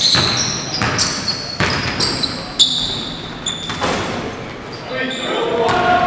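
A basketball dribbled on a hardwood gym floor, its bounces irregular, with sneakers squeaking and players calling out, all echoing in a large gymnasium.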